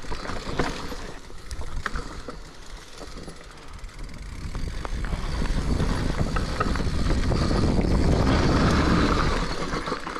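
Mountain bike rolling fast down a dirt forest trail: tyre and wind rumble with small rattles and clicks from the bike over bumps, growing louder from about halfway as speed builds and easing just before the end.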